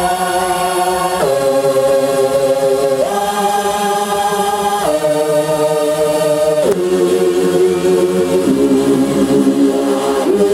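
Electronic dance music in a breakdown: held choir-like chords that move to a new chord about every two seconds, with no drum beat, played loud.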